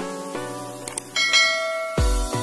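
Bell-like chiming tones from a subscribe-button animation's sound effect, stepping through a short run of notes. A brighter, higher bell ding comes in a little over a second in, as the notification bell rings.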